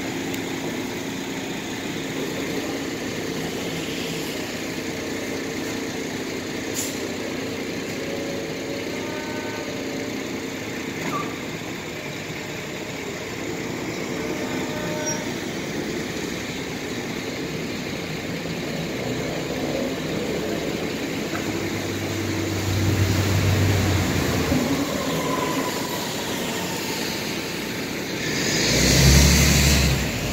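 Steady mechanical hum and vehicle noise, typical of an urban loading dock. A low rumble swells in after about two-thirds of the way, and a loud rush of noise comes just before the end.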